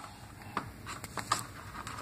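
A few faint taps and light rustles of a cardboard box and a toy being handled.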